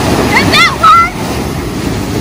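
Ocean surf washing onto the beach, with wind on the microphone. A person's brief, high-pitched call or cry cuts in about half a second in and is the loudest sound, over within a second.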